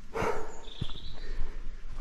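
A man breathing hard and panting after a short run, with footsteps on a dirt path.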